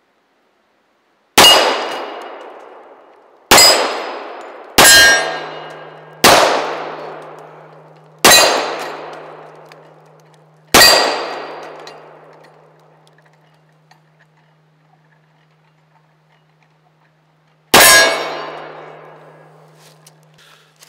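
Seven shots from a Colt 1911 .45 ACP pistol, fired at an uneven pace with a long pause before the last one. Each shot carries a clanging ring from the steel plate targets and an echo that dies away over a couple of seconds.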